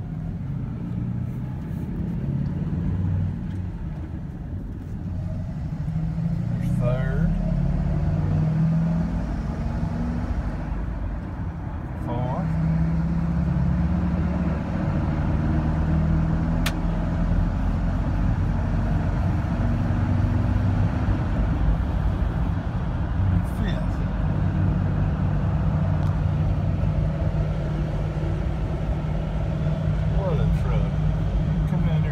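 Ford F-350 Super Duty's 6.8-litre Triton V10 engine pulling the truck up to highway speed, heard from inside the cab as a steady low drone with road noise. The sound drops briefly about four seconds in and again around twelve seconds in, as gears are changed, then builds again.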